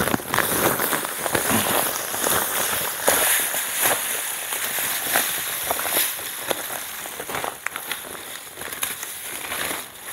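Dry play sand pouring from its plastic bag into a metal cooking pot already part-filled with sand: a continuous grainy hiss full of small crackles, with the bag crinkling. It tapers off over the last few seconds.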